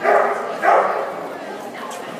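Dog barking twice, about half a second apart.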